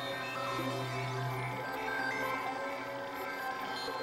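Experimental electronic music of layered synthesizer drones and sustained tones. A low steady drone drops away about a third of the way through, leaving higher held tones with short gliding notes.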